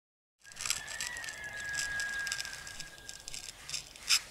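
A razor scraping through shaving foam and stubble on a man's face, giving irregular crackling scratches that start suddenly. A thin steady high tone runs under the scratching through the middle.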